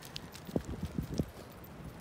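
Dogs' paws on wood-chip mulch: a few faint, irregular soft thuds and scuffs as the dogs move about.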